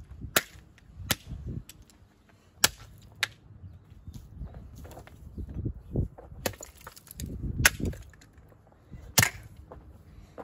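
Golf club striking the broken pieces of a Bissell steam mop on the ground: about seven sharp cracks at irregular intervals, with duller thuds and scuffs between them.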